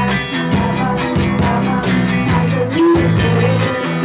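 Live rock band playing a song: electric guitar, bass and drums with regular cymbal hits, and a woman singing over them.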